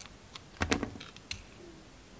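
Snap-off utility knife blade shaving thin slices from a bar of soap: a few short crisp clicks, loudest in a quick cluster a little under a second in.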